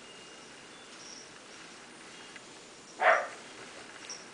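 A house cat gives one short meow about three seconds in, over faint room noise.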